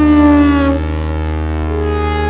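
Roland JD-XA synthesizer playing a preset: a sustained lead note slides slightly down in pitch and fades out about a second in, over a steady deep bass note. A new higher note comes in shortly after halfway.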